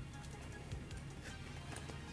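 Faint background music with a low bass line, and a few soft clicks as a plug-on wireless microphone transmitter is handled and fitted onto a condenser microphone.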